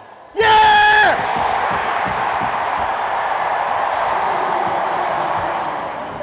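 A man's loud held shout about half a second in, dipping in pitch as it ends, followed by steady arena crowd noise as a shootout save ends an ice hockey game.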